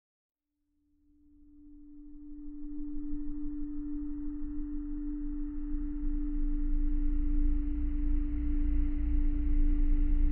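Intro sound-design drone: a single steady hum-like tone with a deep bass rumble that swells in over the first few seconds and then holds.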